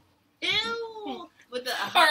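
A person's high-pitched squeal: one drawn-out note that rises and falls over about half a second, coming in after a brief gap of dead silence and followed by excited talking.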